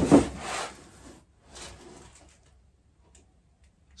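Rubbing and scraping of a laminated router table top against its cardboard box and packing as it is handled upright: a loud scrape at the start and a shorter, fainter one about a second and a half in.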